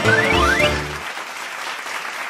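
A live band plays the song's closing bars, with two quick rising runs of notes, and stops abruptly about a second in. Applause follows.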